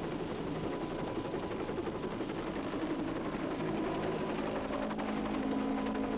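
Steady running noise of a hovering Westland Whirlwind rescue helicopter's turbine engine and rotor, heard from the open cabin doorway. A steady low hum runs under it, and a second, slightly higher hum joins about halfway through.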